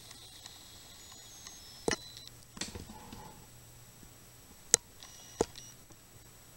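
Quiet room tone broken by a few short, sharp clicks, the loudest about three-quarters of the way through.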